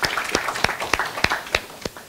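Audience applauding, the clapping thinning out: a few strong single claps, about three a second, stand out over scattered lighter clapping and fade toward the end.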